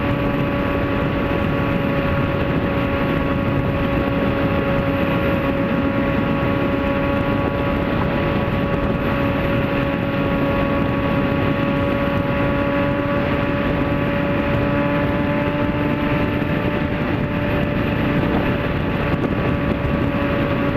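Motorcycle engine running at a steady highway cruise, a constant hum of unchanging pitch, with heavy wind and road noise over it.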